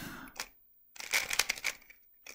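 A 3x3 speed cube being turned by hand: a quick run of plastic clicks and clacks as several face turns are made, about a second in.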